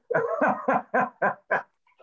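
A person laughing: a run of about six evenly spaced 'ha' pulses, about four a second, that stops about a second and a half in.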